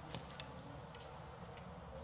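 Metal massage stick tapping and clicking on a bare back: four short, light ticks at uneven spacing, over a low steady hum.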